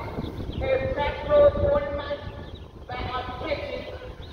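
Group of protesters chanting in unison at a distance, in phrases of one to two seconds with short breaks, over a low rumble.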